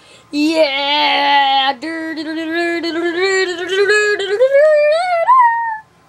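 A child singing a wordless tune in held notes, two phrases with a short break between; the second climbs to a high pitch and then cuts off.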